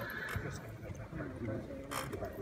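Indistinct voices of people talking and murmuring in a room, with a single sharp click near the end.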